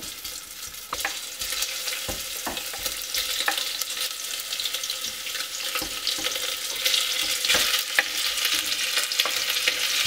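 Ginger slices sizzling and crackling in hot oil in a stainless steel saucepan, stirred with a wooden spatula. The sizzling grows louder in the second half as raw pork rib pieces are tipped into the hot pot.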